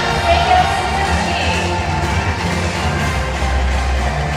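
Music playing over a baseball stadium's PA system, with crowd noise from the stands beneath it.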